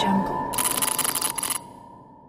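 Tail of an electronic glitch logo sting: a single high electronic tone that rings on and fades away. From about half a second in until just past a second and a half, a burst of crackling digital static stutters over it.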